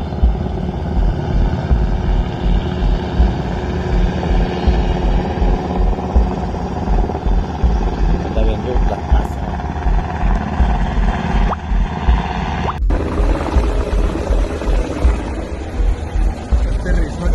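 Helicopter flying low overhead, its rotor thudding steadily as a heavy low rumble, recorded on a phone.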